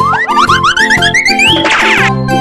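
Children's background music with a cartoon sound effect over it: a wobbling whistle-like tone glides upward in pitch for about a second and a half, then ends in a short noisy burst.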